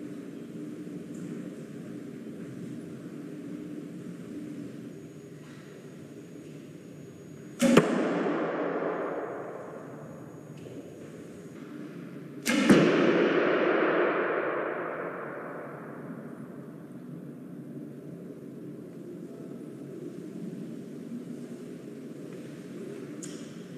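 Two arrows shot from a bow, each a sharp loud hit followed by a long ringing decay in a reverberant hall, about five seconds apart.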